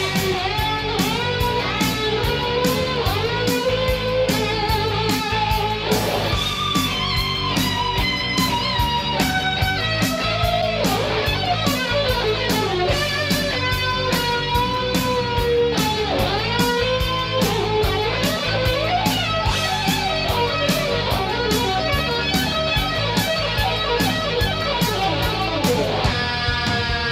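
Rock music led by an electric guitar whose melody bends and slides in pitch, over a steady drum beat.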